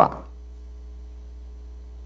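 Steady low electrical mains hum from the microphone and sound system, heard in a pause between spoken phrases. A man's last word dies away in room echo at the very start.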